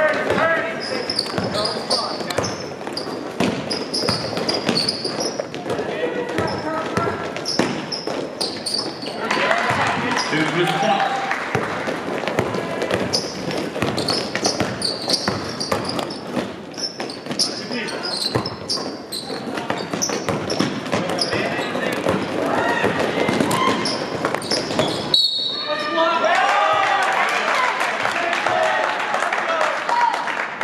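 Basketball game sounds in an indoor gym: a basketball bouncing on the hardwood court, with players and spectators calling out over it. The sound cuts out briefly about 25 seconds in.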